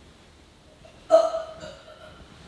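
A man's fake retching: one sudden loud voiced heave about a second in that fades within half a second, put on to sound as if he is being sick.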